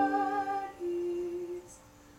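A mezzo-soprano voice holding a note with vibrato over piano accompaniment, breaking off about three-quarters of a second in. A lower note then sustains for about another second and fades away.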